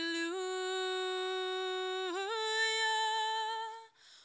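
A woman singing solo without accompaniment, holding one long note and then stepping up to a higher held note about two seconds in, breaking off just before the end.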